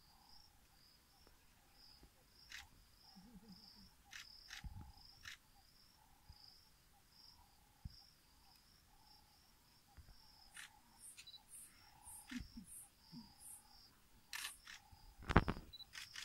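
Steady, rhythmic chirping of insects in two repeating pulse trains, one high and one lower. Scattered faint clicks and a few short, low sounds run through it, with a louder knock shortly before the end.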